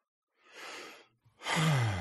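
A person's soft breath in, then near the end a loud sigh that falls in pitch.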